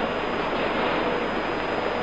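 Steady hiss and noise floor of an old film-sound recording, even throughout, with nothing else heard.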